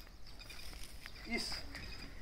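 Quiet outdoor scene with faint footsteps on a brick path, and a man's voice briefly starting a word about a second and a half in.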